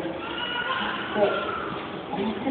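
Woman's voice through a microphone, holding high tones with a wavering, gliding pitch.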